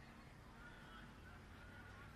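Near silence of an outdoor field, with a few faint, thin high-pitched tones in the background.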